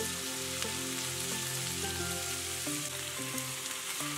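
Mixed vegetables (carrot, green beans, potato) sizzling steadily in oil in a kadai over a low-to-medium flame, under soft background music with long held notes.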